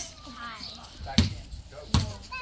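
Two sharp thumps about three-quarters of a second apart, the loudest sounds here, with faint voices in between.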